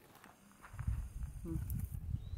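Low, uneven rumbling noise on the camera's microphone, starting a little under a second in, with a short "hmm" from a person about a second and a half in.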